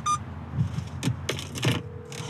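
Earpiece phone call being placed in a car cabin. A short electronic beep, then a few sharp clicks, then a steady tone starts near the end as the call rings out, over the low hum of the car.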